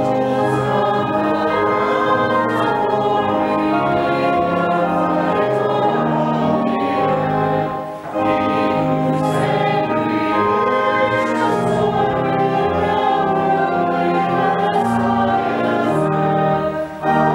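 Congregation singing a hymn to organ accompaniment, with sustained chords under the voices and a brief break between lines about halfway through.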